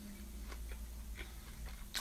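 Faint chewing of a crisp-fried quinoa burger: a few small, scattered crunches and mouth clicks over a low steady hum.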